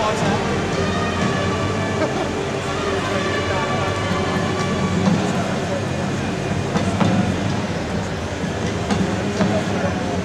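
Steady mechanical rumble with a constant low hum, mixed with indistinct voices and a few faint clicks.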